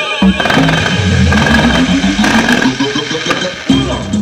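Fireworks on a burning castillo, with spark fountains and rockets making a loud rushing hiss and crackle. Music plays underneath and comes back more clearly near the end.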